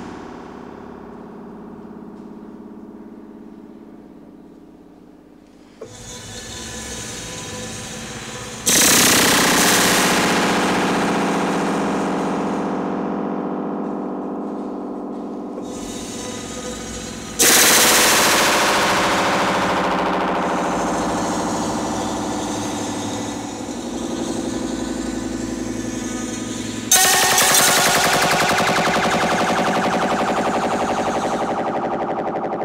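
A long steel wire plucked by a bolt on a moving model locomotive's pantograph, heard through a small amplifier. There is a soft pluck about six seconds in, then three loud plucks roughly nine seconds apart. Each rings with many overtones and fades slowly like a long guitar string.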